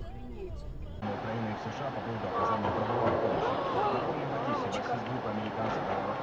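Several voices talking over one another inside a moving car, over steady road noise. The sound changes abruptly about a second in.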